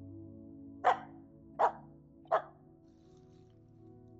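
Finnish Spitz barking three times, about three-quarters of a second apart, over soft background music.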